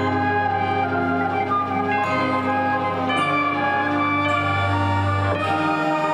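High school marching band and front ensemble playing a slow passage of held chords over a low bass note that drops out near the end.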